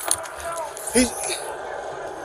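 Mostly speech: a man says a single word about a second in, over low, steady background noise.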